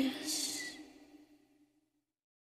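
A female pop singer's final held note trailing off at the end of a song, with a short breathy sigh about a quarter second in. It all fades out within about a second.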